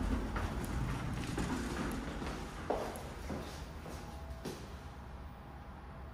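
Footsteps on a hard floor stepping out of an elevator car, with a few scattered knocks and scuffs, the sharpest a little under three seconds in, over a low rumble that slowly fades.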